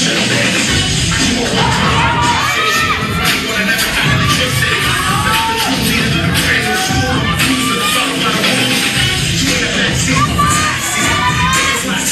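A crowd shouting and cheering over loud dance music with a steady beat, the short whoops and yells coming again and again throughout.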